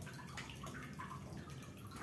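Faint, scattered small clicks of handheld pruning shears being worked among a potted plant's stems and ties, over a low steady background.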